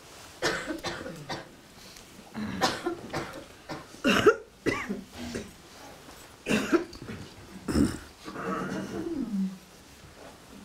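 People in a quiet room coughing and clearing their throats, about eight short separate sounds, the loudest about four seconds in, with a longer sound falling in pitch near the end.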